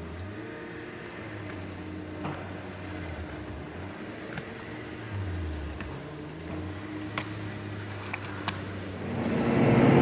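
An engine running steadily, its pitch wavering slightly, growing louder in the last second.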